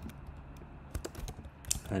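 Computer keyboard typing: a handful of separate keystrokes at an uneven pace as text is deleted and retyped in a code editor.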